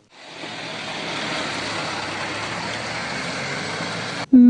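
Motor vehicle running close by: a steady rushing engine and road noise with a faint low hum, fading in at the start.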